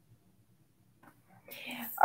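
Near silence for about a second and a half, then a faint breathy sound of a person's voice, like a soft whisper or intake of breath, building just before speech resumes.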